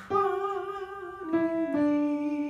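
Upright piano playing a slow hymn's alto line, with a voice singing or humming along on held notes with vibrato. New piano notes are struck near the start and again about a second and a half in.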